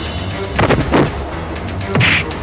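Dubbed fight-scene punch and hit sound effects, heavy thuds a little after half a second in, at about one second and again at the very end, over steady action background music.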